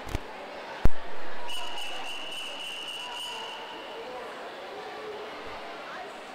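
A loud sudden thump, then a long, steady, high whistle blast of about two and a half seconds over crowd chatter in the pool hall. It is typical of the referee's long whistle calling backstroke swimmers into the water for the next heat.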